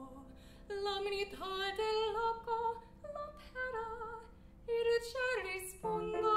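A woman singing a classical vocal line with vibrato, in sustained phrases broken by short breaths.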